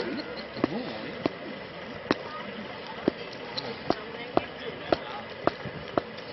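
Sharp single hand claps, unevenly spaced about one to two a second, over low crowd chatter.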